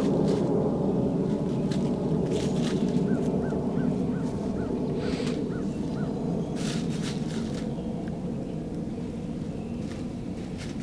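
A steady low rumble that slowly fades, with hens scratching and rustling in dry leaves. A run of about eight soft, evenly spaced peeps comes a few seconds in.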